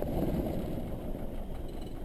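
A North American AT-6D's Pratt & Whitney R-1340 Wasp radial engine running down after being shut off with the mixture: a low, uneven rumble that fades away.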